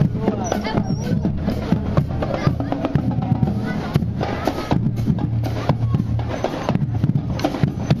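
Marching band playing on the move, its drums beating steadily, bass and snare drum strokes over a low sustained tone, with voices around it.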